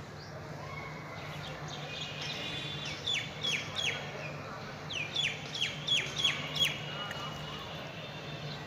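Bird calling: short, sharp notes that slide down in pitch, a quick run of three about three seconds in, then a run of six from about five seconds.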